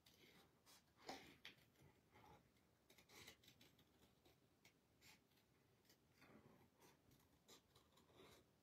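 Small scissors snipping faintly through paper in an irregular run of soft snips while fussy cutting around a stamped sentiment.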